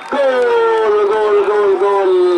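A football commentator's voice holding one long drawn-out goal shout that slowly falls in pitch, calling the penalty that has just levelled the score at 1-1.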